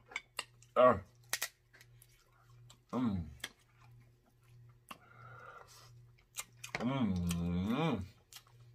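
Eating snow crab legs: scattered small clicks and smacks of shell handling and chewing, with a short grunted 'uh' about a second in, a brief hum about three seconds in, and a longer hummed 'mm' of enjoyment near the end.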